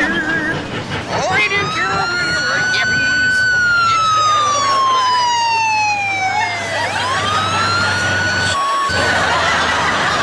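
Police motorcycle siren wailing. Its pitch climbs, holds, then slowly sinks before climbing again, and it breaks off for a moment near the end. A steady low engine hum runs beneath it.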